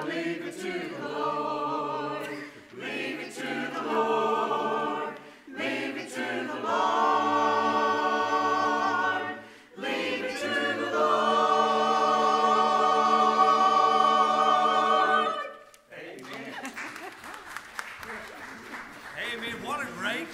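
Church choir singing the last lines of a gospel song, with long sustained chords toward the end; the singing stops about three-quarters of the way through. Scattered clapping and shuffling follow.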